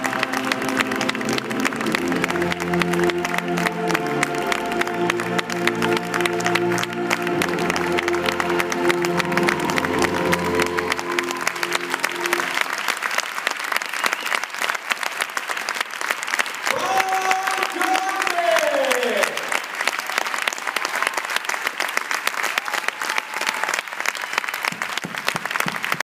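Slow music with long held chords ending about halfway, with audience applause under it that carries on alone once the music stops. A single voice calls out over the clapping about two thirds of the way through, its pitch falling.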